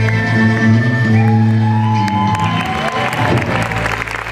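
Live band with drums, electric guitar and accordion holding a final chord that breaks off about two seconds in. Audience cheering, whooping and clapping rises over the end of the chord.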